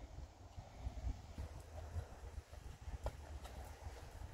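Faint, dull hoofbeats of a horse moving over a soft sand-and-rubber arena surface, under a low rumble.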